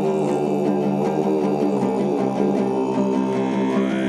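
Altai kai throat singing: a deep, steady drone voice with ringing overtones, accompanied by a plucked two-stringed topshur lute. Near the end a whistle-like overtone glides upward in pitch.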